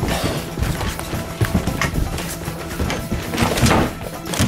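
Music playing, with quick, uneven footsteps thumping down a staircase.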